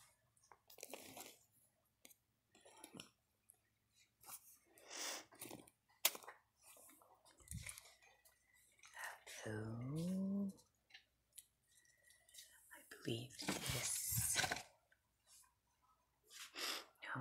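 Plastic-wrapped merchandise rustling and crinkling in short, irregular bursts as it is handled, with a sharp click about six seconds in. A brief low murmured voice comes in around the middle.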